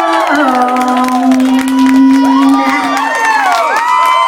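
Audience cheering and whooping at the end of a live tribute performance, with high gliding whoops in the second half. Under it the backing music holds a low note, which stops about three seconds in.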